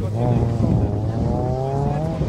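Race car engine accelerating hard out of a corner, its pitch rising steadily through one gear.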